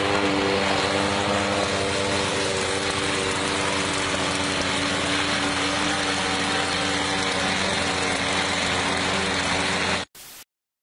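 Lawn mower engines running steadily: a walk-behind rotary mower cutting grass on a slope and a John Deere ride-on lawn tractor, a continuous drone.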